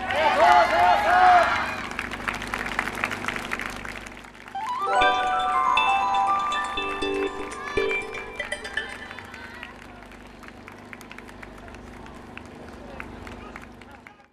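Street-festival sound: voices calling out in the first seconds, then music with steady held tones from about five seconds in, over the steady hum of a running generator. All of it fades out at the end.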